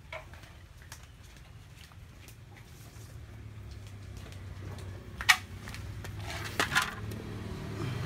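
Quiet steady low hum in the background, broken by a sharp click about five seconds in and a few knocks near the end as a motorcycle's fuel-injection throttle body is handled and set into an aluminium tray.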